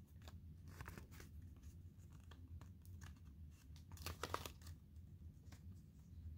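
Faint rustling and small clicks of a pop-up book's paper pages being handled, with a brief louder burst of paper crinkling about four seconds in.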